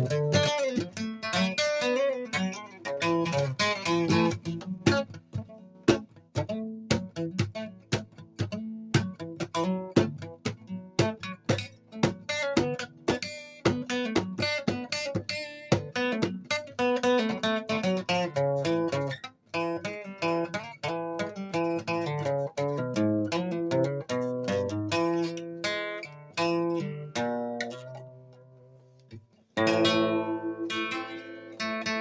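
Acoustic guitar played solo with no singing: a steady run of picked notes and strums. Near the end it dies away almost to nothing, then comes back with a fresh strum.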